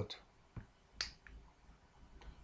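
A single sharp click about a second in, with a fainter click just before it, over low room tone.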